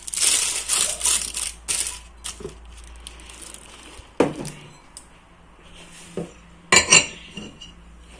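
Wrapped chocolate candies crinkling and rustling as a handful is dropped into a cut-glass dish, followed by scattered clinks and a few sharp knocks of glass dishes on the countertop, the loudest two close together near the end.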